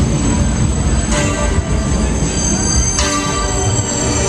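Loop Fighter thrill ride in motion, heard from a rider's seat: a loud steady low rumble of the ride and rushing air, with thin high whining, squeal-like tones that shift about a second in and again near the end.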